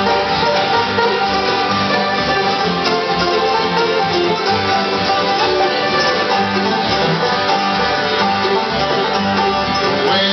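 Live acoustic bluegrass band playing an instrumental passage, five-string banjo prominent over strummed acoustic guitars and mandolins, with a steady driving rhythm.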